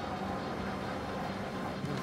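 Steady low mechanical hum over outdoor background noise, unchanging throughout.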